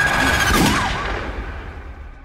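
A loud, sudden gunshot-like hit whose echoing tail dies away over about two seconds, with a steady high ringing tone under it that fades out midway.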